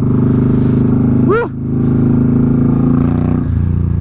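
2005 Suzuki Boulevard M50's V-twin engine running steadily under way, heard from the rider's seat. A short rising voice-like cry comes about a second in, and the engine note changes briefly near the end.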